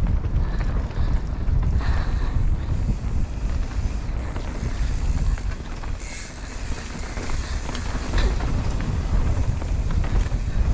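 Wind buffeting a helmet-mounted camera's microphone while a mountain bike descends a dirt trail, a steady low rumble with tyre noise over dirt and a few sharp clicks.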